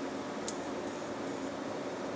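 Steady hum and hiss of running computer equipment and its cooling fans, with a faint click about half a second in.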